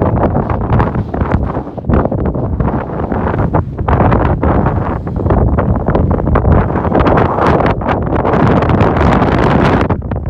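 Strong wind buffeting the microphone: a loud, gusty rush that swells and eases with the gusts.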